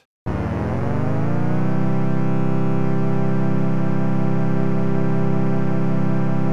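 Padshop 2 granular synthesizer playing one sustained note made of short grains, its duration spread set to about 18% so the tone sounds detuned. The note starts just after the opening, settles over the first second or so, then holds with a slight waver.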